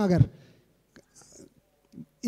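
A man's amplified speech ends on a long drawn-out word, then a pause of nearly two seconds holding only a few faint ticks and a short soft hiss.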